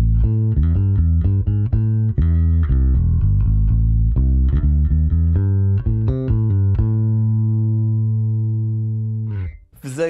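Electric bass guitar played fingerstyle through a Bergantino Super Pre bass preamp with its NXT112 speaker-cabinet profile selected: a run of plucked notes, then one low note held for nearly three seconds that fades before cutting off.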